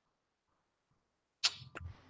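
Near silence, then about one and a half seconds in a short sharp click with a brief hiss, followed by a second, fainter click.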